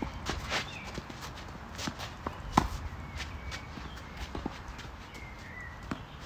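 Tennis rally on a clay court: a series of sharp pops from racket strings striking the ball and the ball bouncing, about one a second, the loudest about two and a half seconds in, with footsteps scuffing on the clay between shots.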